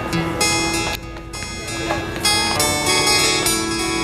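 Two acoustic guitars playing the introduction of a song, individual plucked notes ringing over one another.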